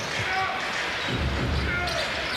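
Basketball being dribbled on a hardwood arena court, with thuds from the bounces over steady crowd noise and a few short squeaks.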